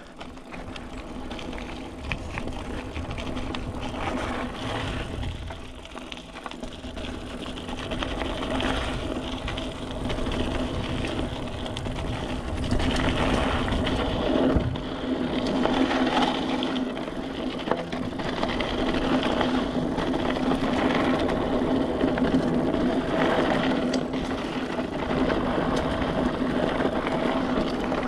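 Mountain bike riding downhill on dirt singletrack. The tyres roll and crunch over the dirt, the bike rattles, and the rear hub gives a steady mechanical buzz while coasting. It all gets louder from about eight seconds in as speed picks up.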